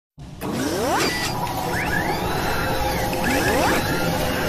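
Sound-effects track of an animated logo intro: a steady low rumble with rising whooshing sweeps about a second in and again near the end, and a few mechanical clicks.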